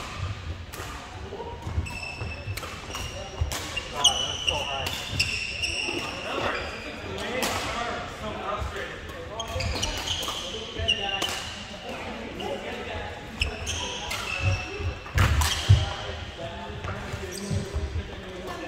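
Badminton rackets smacking shuttlecocks in sharp, irregular cracks that echo in a large hall. Sneakers squeak in short high chirps on the wooden court floor. Indistinct players' voices run underneath.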